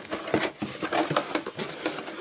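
Cardboard box being opened by hand: the lid flaps lifted and folded back, with irregular scrapes, taps and rustles of the cardboard.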